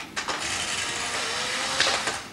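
A small motorised machine whirring steadily for about a second and a half, its gears running, then stopping abruptly.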